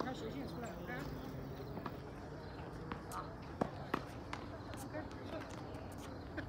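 Tennis ball being hit by rackets and bouncing on a hard court during a rally, heard as sharp knocks. The loudest two come close together a little past halfway, with fainter knocks around them, over background voices.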